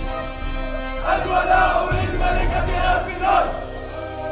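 A group of men shouting out together in unison: a long cry starting about a second in, then a shorter one near the end, over background music with low drum beats.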